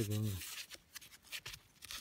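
A silver George V coin rubbed back and forth against dark waterproof trousers, a run of short, faint scratchy strokes, wiping the soil off the freshly dug coin.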